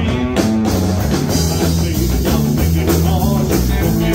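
A rockabilly band playing live: electric guitars over drums and a bass line that moves note by note.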